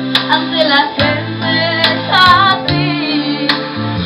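A woman singing into a microphone over recorded backing music with a steady bass line. She holds a wavering note a little over two seconds in.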